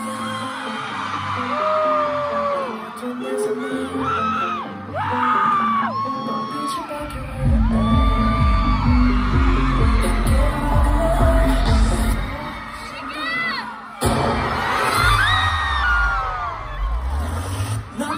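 K-pop song played loud over a concert PA, with fans screaming and shouting over it; a heavy bass beat comes in about seven seconds in. The sound breaks off abruptly about fourteen seconds in and picks up again.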